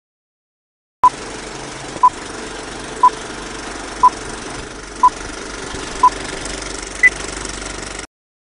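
Film-leader countdown: a short beep once a second, six times at the same pitch, then a final beep about an octave higher. Underneath runs a steady rattle and hiss like an old film projector.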